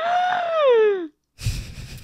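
A woman's high, wordless exclamation of shock, held for about a second and then sliding down in pitch, followed by a short breathy rush of noise.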